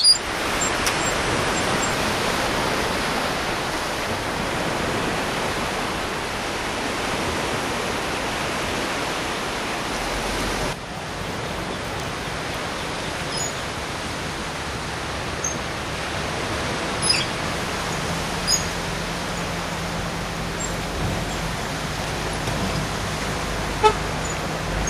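Steady outdoor ambience: an even rush of noise that drops a little about eleven seconds in, with a few faint clicks and a faint low hum in the last few seconds.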